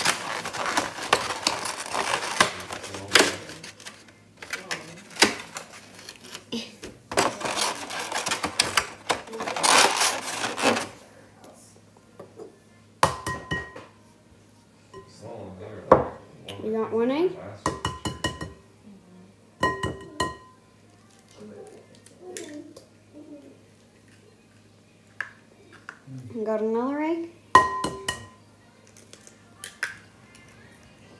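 Eggs tapped against the rim of a mixing bowl to crack them: a series of sharp taps in the second half, several leaving a brief ringing tone from the bowl. Before that, two long stretches of loud rustling noise.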